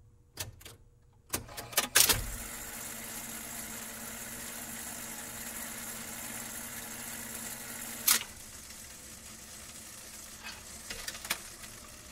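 Several mechanical clicks in the first two seconds, then the steady hiss and crackle of a vinyl record's lead-in groove playing on a jukebox before the song begins. There is one louder click about eight seconds in.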